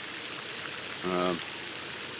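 A steady hiss of running water that holds at an even level, with a short spoken 'uh' about a second in.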